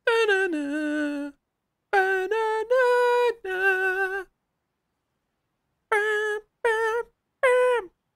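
A high voice singing or humming short held notes, in several phrases broken by silences, with a longer pause in the middle.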